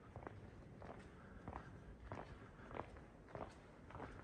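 Faint footsteps on a stone floor, an even walking pace of about one and a half steps a second.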